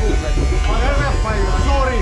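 Steady electric motor buzz from a blower driving air into a blacksmith's forge, with people's voices over it.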